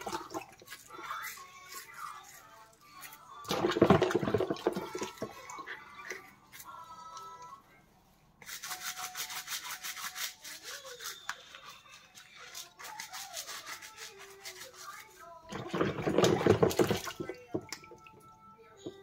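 Bottle brush scrubbing inside a baby-bottle teat in soapy water, in quick repeated strokes, with two louder bursts of splashing.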